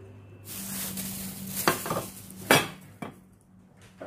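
A stainless steel stockpot and its lid being handled: a rustling hiss, then several sharp metal clanks, the loudest about two and a half seconds in.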